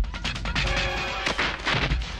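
Action-film fight soundtrack: loud background music with rapid percussive hits mixed with punch and whack sound effects, and a held tone about half a second in.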